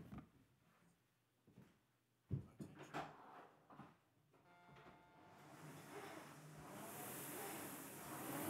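A few faint knocks and clunks, then the air-braked flywheel fan of a Concept2 rowing machine spinning up as rowing begins: a rush of air that grows steadily louder through the second half.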